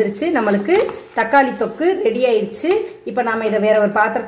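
A person's voice talking almost without a break, over light clinks and scrapes of a metal spoon stirring thick paste in a pan.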